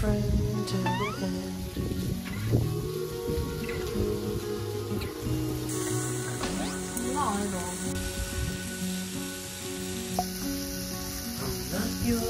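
Background music over meat and sausages sizzling on a grill plate, with a few brief voices.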